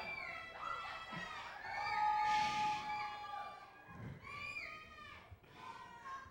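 Audience whooping and cheering, many high voices overlapping, with one long held call about two seconds in.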